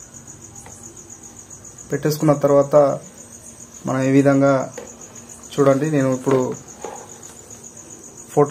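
Crickets chirring steadily in the background with a fine, fast pulse, under three short spells of a man talking.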